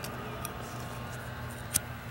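Steady drone of a distant leaf blower in the background, with a few faint ticks and one sharper click near the end as the knife and the freshly cut paracord are handled.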